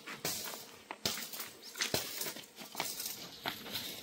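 Plastic polyhouse sheet rustling as it is handled against an aluminium lock profile, with scattered light clicks and taps.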